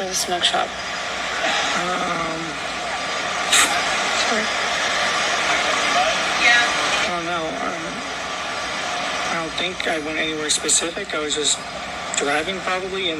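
Indistinct voices from a recorded police interview playing back over a steady rushing background noise; the noise eases about seven seconds in and the voices carry on to the end.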